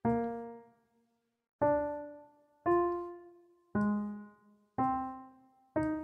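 Sampled grand piano (FL Studio's Close Grand) sounding single notes one at a time at different pitches, six in all about a second apart, each struck and quickly dying away. These are notes played back as they are placed in the piano roll to fill out chords.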